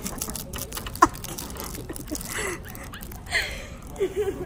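Crinkling and crackling of the plastic wrapper on a roll of Smarties candy being twisted and squeezed in the fingers, with one sharp snap about a second in.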